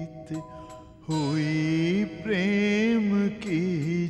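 A song sung in Hindi: one voice holding long notes with a slight waver. It breaks off for about a second at the start, then comes back in with gliding notes.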